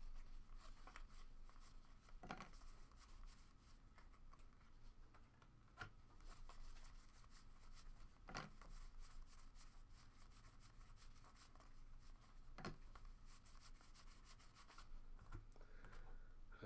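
Faint rustling and sliding of trading cards being thumbed through by hand, one card slid off the stack after another, with a few soft taps scattered through.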